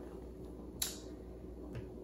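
Faint room tone with two small clicks at a computer, one about a second in and a fainter one near the end, as browser tabs are switched with the mouse or trackpad.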